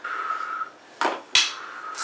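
Small toy pan flute blown for one short, breathy note, then two sharp knocks about a third of a second apart.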